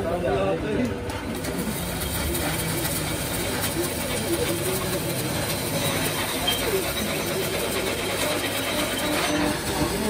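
Stick (arc) welding on a steel axle tube: a steady, dense crackle from the electrode arc. Voices talk over it and a low hum runs underneath.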